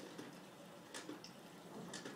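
Faint trickle of hot water being poured onto coarse coffee grounds in a French press, with a light click about a second in and another near the end.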